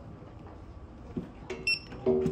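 A short high electronic beep near the end, just after a click, over a low steady background rumble.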